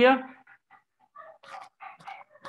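Speech only: a man's voice ends a question on a rising pitch, then faint, broken voices follow.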